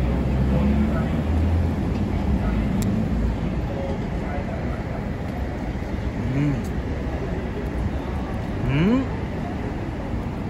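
A coin scraping the scratch-off coating of a paper lottery ticket, over steady city street and traffic noise.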